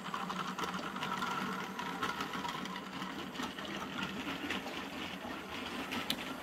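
Model trains running on the layout's track: a steady electric motor whir with rapid, irregular clicking of wheels over the rail joints.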